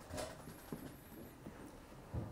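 Quiet room tone with a few faint clicks and small knocks, and a faint high whine for about a second.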